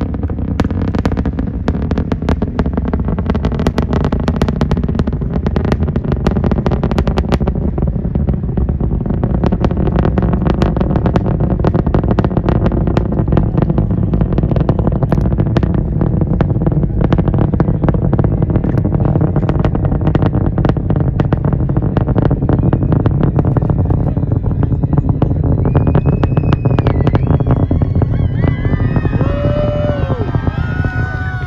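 Artemis I Space Launch System rocket's four RS-25 engines and two solid rocket boosters heard from about three miles away: a loud, continuous low rumble shot through with dense crackling.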